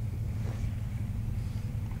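A steady low machine hum runs throughout, with no sudden sounds.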